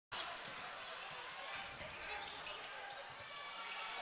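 Faint basketball game sound in a sparsely filled gym: a ball being dribbled up the court over low crowd murmur.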